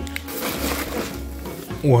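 Blue plastic bag packed with fish and ice crinkling and rustling as it is lifted out of a styrofoam box, over background music.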